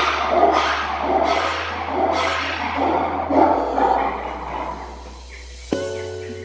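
Background music with steady bass notes under a loud, harsh call that pulses about twice a second and fades out near the end, from a red ruffed lemur.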